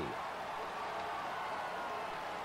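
Steady stadium crowd noise: an even roar from the stands with no single cheer standing out.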